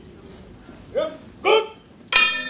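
Two short shouts from a person's voice, about a second in and again half a second later, against a quiet hall.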